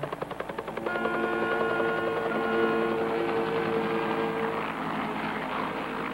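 Bell UH-1 Huey helicopter's rotor blades thumping in a rapid beat as it comes down to land, the beat plainest in the first second.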